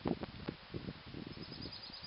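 Wind gusting on the microphone in an irregular low rumble, with a faint, rapid, high chirping starting near the end.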